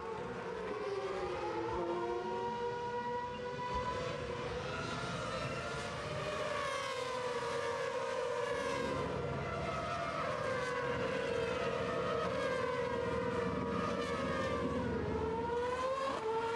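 Formula 1 cars' 2.4-litre V8 engines running at high revs on track, several at once, their pitch rising and falling as they accelerate, shift and brake through the corners.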